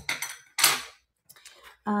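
Plastic bangle bracelets clacking against each other and being set down on a hard table: two short clatters, the second and louder one about half a second in, then a few faint ticks.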